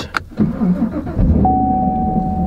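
A 2019 Camaro SS 1LE's 6.2-litre V8 starting: a click, a brief crank, then the engine catches about a second in and settles into a steady low idle. A steady high tone comes in about halfway and holds.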